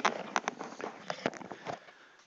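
About six irregular clicks and knocks: handling noise from the telescope mount gear being moved, thinning out near the end.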